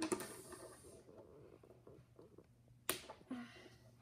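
Plastic toy fence pieces from a Shopkins Happy Stables playset being handled and pushed into place, with faint taps and rustles and one sharper click about three seconds in. The fence is hard to fit into the stable.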